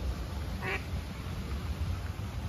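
A duck quacks once, a single short call about two-thirds of a second in, over a steady low rumble.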